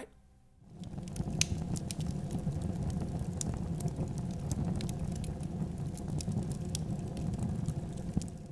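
A steady low rumbling noise with light crackles and clicks scattered through it. It comes in about a second in after a brief near-silence.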